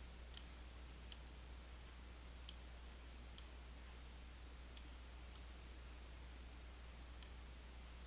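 Six faint, sharp computer mouse clicks at uneven intervals, over a steady low hum.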